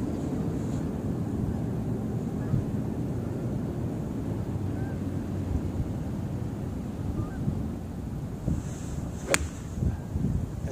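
Wind rumbling on the microphone, then, about nine seconds in, a single sharp crack of an iron club striking a golf ball: a solidly struck shot.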